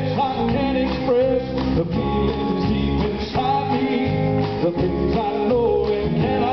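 Live southern gospel song: a male voice sings into a microphone over a band of electric guitar and drum kit.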